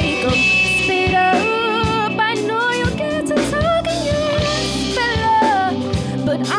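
Live band playing a song: a woman singing gliding, wordless-sounding lines over drum kit, electric bass, electric guitar and keyboard.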